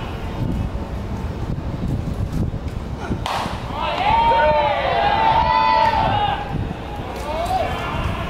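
A sharp pop about three seconds in, as the pitch lands in the catcher's mitt, followed by two seconds of loud, drawn-out shouts from players, over a steady ballpark background.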